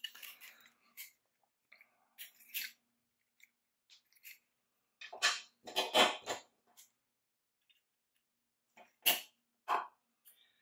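Plastic spool of 18-gauge craft wire being handled while a length of wire is pulled off it: scattered clicks, taps and rustles, loudest a little past the middle and again with two sharp clicks near the end.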